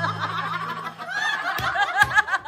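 Several women laughing together in chuckles and giggles. Under the laughter, a held low musical note fades out in the first second and a half.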